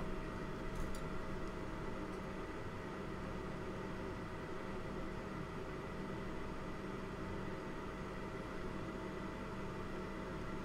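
Steady low hum and hiss with a few faint constant tones, unchanging throughout: workbench room tone, with no distinct event.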